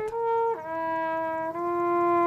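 A solo trumpet playing a fanfare outdoors: a short note, then a drop to a lower note held long, with a small step up in pitch partway through.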